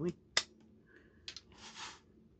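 Handling noise from a Colt SP-1 AR-15 rifle: one sharp metallic click, a fainter double click a second later, and a short soft rustle near the end.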